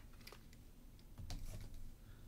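A few faint, sparse plastic clicks and handling noise from over-ear headphones being taken off, with a soft low bump a little over a second in.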